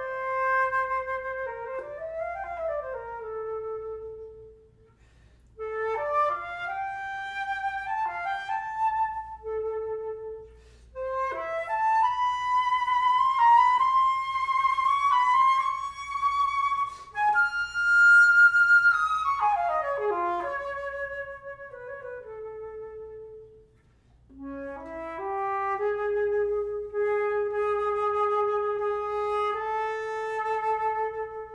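A 1922 Louis Lot all-silver, closed-hole Boehm flute, never retuned, played solo in melodic phrases broken by short breaths. It climbs to a high held note a little past halfway, then settles on a long low held note.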